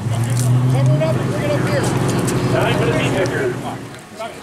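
A motor running with a steady low hum that fades out about three and a half seconds in, under people talking.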